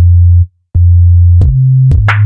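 Hip-hop beat with the drums dropped out, leaving only deep 808-style sub-bass notes. Each note starts sharply and cuts off into a short silence. The bass steps up in pitch about one and a half seconds in, with a couple of sharp clicks near the end.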